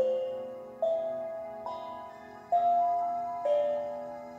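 Soft, slow background music: single struck notes about one a second, each fading away before the next, forming a gentle melody.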